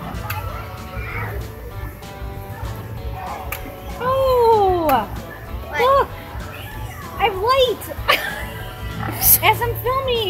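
A pig calling from its pen in several drawn-out squeals. The first, about four seconds in, rises and then falls away, and shorter ones follow near six and seven and a half seconds and again at the end. Background music and a steady hum run underneath.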